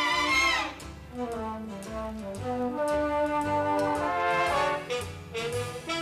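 Instrumental band music with brass to the fore, over a low bass line, with a quick falling run of notes in the first second.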